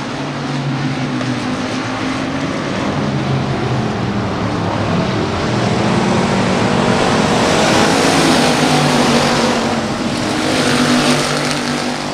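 A pack of factory stock dirt-track race cars running at speed, several engines at once. The sound swells to its loudest about two-thirds of the way through, then eases off.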